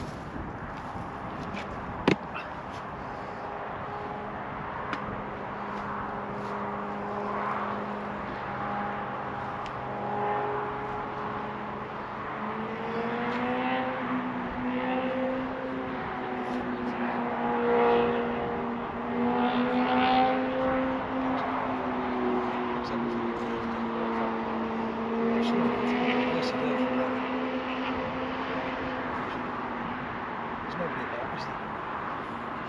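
An engine humming steadily. About halfway through its pitch rises a little and then wavers slowly up and down. A single sharp click comes about two seconds in.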